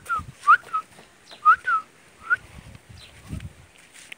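Puppy whimpering in short, high whines that rise and fall, about six in the first two and a half seconds, with soft low thumps from it being handled.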